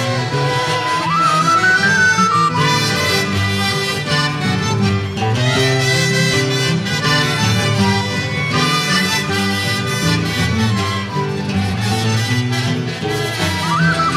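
Andean estudiantina playing an instrumental interlude of a pandilla puneña, with accordions, mandolins and guitars together, and a trumpet and a flute-type wind instrument on the melody. There is no singing. A higher melody line comes in about a second in and again near the end.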